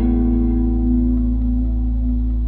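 Fender Stratocaster electric guitar letting a chord ring out through effects, with no new notes picked, over a steady deep bass note.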